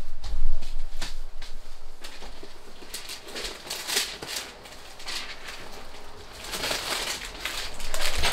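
Someone rummaging off to the side for bags of candy: scattered knocks and clicks with bursts of plastic packaging rustling.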